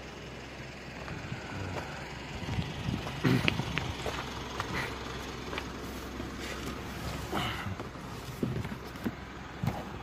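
Car driving slowly over a rough gravel road, heard from inside the cabin: a steady low rumble of engine and tyres with scattered knocks and rattles from the stony surface.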